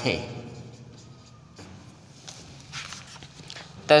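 Faint scratching of a felt-tip marker on a whiteboard as a word is written, then soft scuffs of steps and a book being handled.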